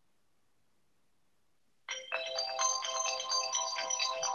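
Silence for about two seconds, then a tune of electronic tones starts suddenly and keeps playing.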